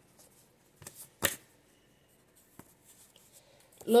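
Paper cards being handled and drawn: a couple of soft rustles, then one sharp snap of a card about a second in, followed by a click and a few faint ticks.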